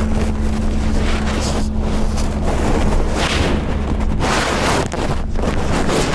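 Car on the move: a steady low engine and road drone, with gusts of wind buffeting the microphone several times, the strongest over the last two seconds.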